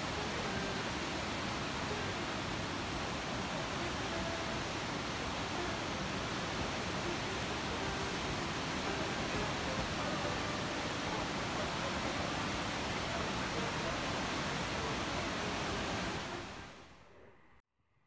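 Steady rush of churning, turbulent water, fading out near the end.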